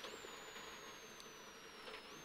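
Subaru Impreza rally car's drivetrain heard faintly from inside the cabin. A high whine slides steadily down in pitch and jumps sharply up twice, once just after the start and once at the end, as the revs fall with each downshift on the approach to a corner.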